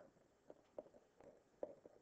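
Faint taps of a stylus on a digital writing surface as handwriting is drawn, about five short taps over the two seconds, over quiet room tone.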